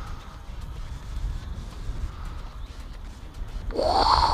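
Strong, gusty wind buffeting the microphone as a low, uneven rumble, with a brief louder rising sound near the end.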